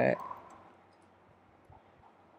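A man's spoken word ending, then near quiet with a faint click or two of computer keyboard keys being typed.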